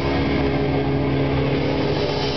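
Heavily distorted electric guitar and bass holding one sustained chord in a loud grindcore band rehearsal.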